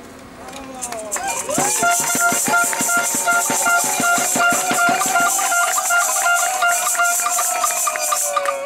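Protest noise-making after a speech: hand shakers rattling, with long wavering pitched tones and a pulsing higher tone, starting about a second in. Regular beats run for a few seconds under them.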